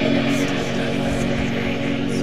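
Darkwave electronic music: a sustained, droning synthesizer chord held steady over a low, rapid pulse.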